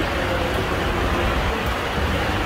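Steady low rumble and hiss of bus-station background noise, with no single clear source standing out.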